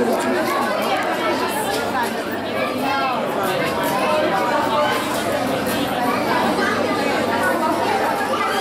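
Steady chatter of many shoppers talking at once, their voices overlapping into an unbroken hubbub.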